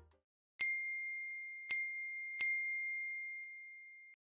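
Three bright bell-like dings on the same note, the first about half a second in and the last two closer together, each ringing on and slowly fading: an end-screen sound effect.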